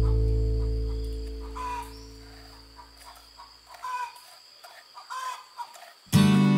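Acoustic guitar background music, its last chord ringing out and fading over the first few seconds. A chicken clucks a few times, briefly each time.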